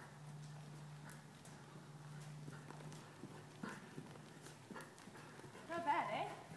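Faint hoofbeats of a ridden horse moving over the dirt footing of an indoor arena, irregular soft knocks over a steady low hum.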